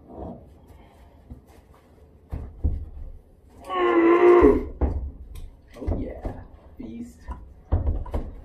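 A woman's wordless vocal cry of effort, about a second long near the middle, as she hauls her legs up while hanging from an overhead beam. Scattered low thumps and knocks of her body, harness and rope come before and after it.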